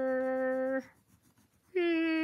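A woman's voice holding a long, flat-pitched "aaah" that stops just under a second in. After a short pause, a second, higher held note begins near the end.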